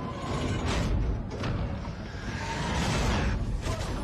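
Action-film sound mix: a low rumbling score with several sharp hits and a rush of whooshing noise that swells to a peak about three seconds in.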